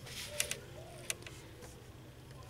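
Quiet room with a few faint, short clicks in the first half and light handling noise.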